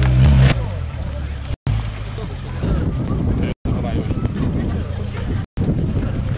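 Suzuki Samurai off-road truck's engine running at low revs as it crawls down a steep rocky slope, louder for the first half-second. Onlookers' voices and wind on the microphone are mixed in. The whole sound cuts out for a split second about every two seconds.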